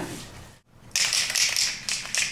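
Paper and plastic drop sheeting rustling and crackling as sheets are handled and laid down, starting about a second in after a brief silent gap.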